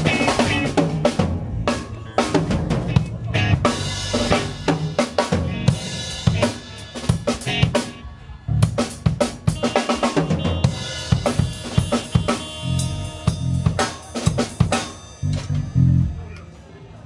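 Live band playing, led by a drum kit: kick, snare and cymbal hits, with other instruments sustaining notes underneath. The playing thins briefly about halfway through.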